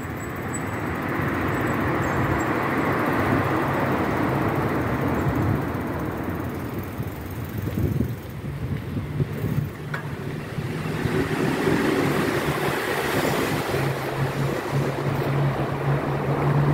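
Steady road traffic noise echoing in a road underpass, heard from a moving bicycle. A vehicle's low engine hum comes in during the last few seconds.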